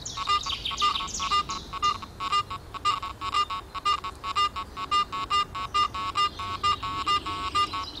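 Garrett AT Pro International metal detector responding to an iron nail lying on a coin, with iron audio on: a fast run of short electronic beeps, the broken low tone of iron mixed with a clear higher mid-tone. This is the sign that a target worth digging lies among the iron. Birds chirp in the background.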